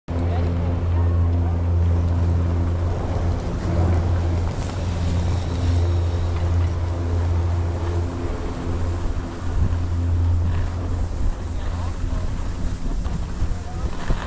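Wind rushing over a moving action camera's microphone on a ski slope. Under it runs a steady low hum that weakens after about eleven seconds.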